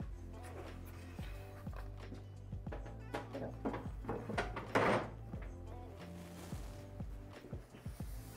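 Quiet background music with steady low tones, over light knocks and clunks as the booth's lid is handled and set down onto the console, the loudest knock a little before the five-second mark.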